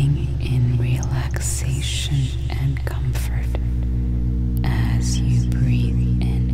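Ambient sleep music: a sustained low drone with a slow, soft melody, its chord shifting about halfway through, overlaid with airy, whisper-like high sounds.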